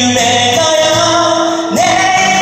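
A man singing with acoustic guitar accompaniment through a PA: a long held note, then a new note sliding up into place near the end.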